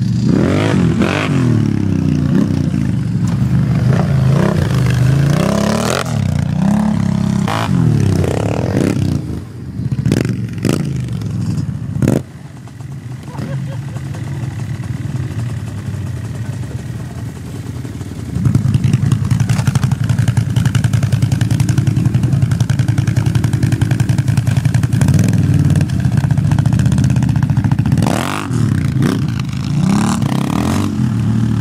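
Sport quad (ATV) engines revving up and down as the quads ride across dirt, with a few sharp knocks partway through. About two-thirds of the way in, a quad engine close by runs loud and steady.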